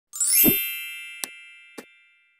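Logo-intro sound effect: a bright bell-like chime with a low thump under it, ringing out and fading away, followed by two short clicks about half a second apart.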